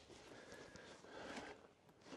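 Near silence: faint outdoor background with no distinct sound.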